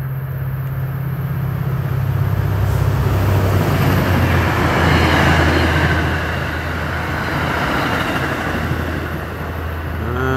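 MBTA commuter rail train passing at speed. The diesel locomotive's low engine drone drops in pitch as it goes by about three seconds in, followed by the steady rumble of the coaches' wheels on the rails.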